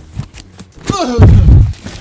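Cardboard packing being torn and pulled out of a box: scattered rips and rustles, then a heavy, loud thud and rumble of cardboard a little past halfway.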